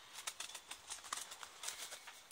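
Crows moving about inside a wire-mesh cage trap: faint, irregular rustling with light rattling clicks.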